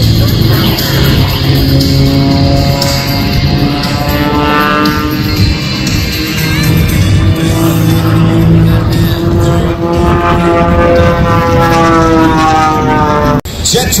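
Aerobatic propeller plane's piston engine, its pitch sliding up and down through the manoeuvres, heard over loud airshow music. The sound breaks off suddenly near the end.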